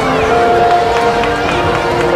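Marching band playing held notes that step from one pitch to the next, with spectators talking close to the microphone.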